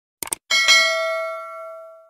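Subscribe-animation sound effect: two quick mouse clicks, then a notification bell ding, struck twice in quick succession, that rings on and fades away over about a second and a half.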